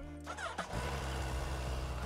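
Suzuki Hayabusa GSX1300R's inline four-cylinder engine idling with a steady low hum, settling in under a second in.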